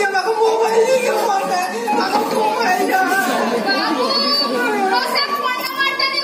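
Overlapping voices in a large hall: amplified stage dialogue from a handheld microphone through loudspeakers, mixed with audience chatter and children's voices.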